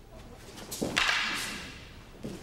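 A single sharp, forceful shouted exhalation about a second in, a short voiced onset that turns into a breathy rush and fades over most of a second, typical of a kiai during a sword-against-jo attack.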